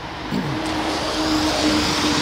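A motor vehicle passing on the street, its steady engine hum and tyre noise growing louder.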